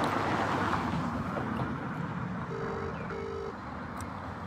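Road traffic noise from a passing vehicle, loudest at first and fading away, with two short beeps near the end.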